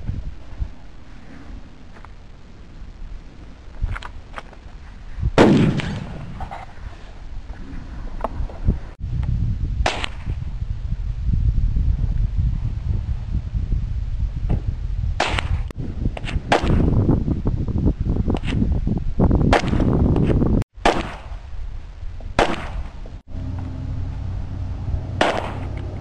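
A series of rifle shots, about ten sharp cracks spread out with uneven gaps, the loudest about five seconds in. A steady low rumble runs under the shots through the middle stretch.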